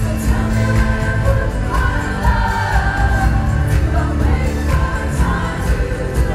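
A live band performance of a dance-pop song: a woman singing lead into a microphone over a steady drum beat and heavy bass.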